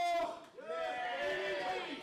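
A voice shouting in the hall, quieter than the commentary: a short high-pitched "yeah", then a long drawn-out call that wavers in pitch.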